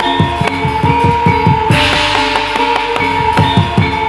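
Live gamelan ensemble playing dance accompaniment: rapid drum strokes, each dropping in pitch, over steady ringing metal gong-chime tones, with a brief noisy swell about halfway through.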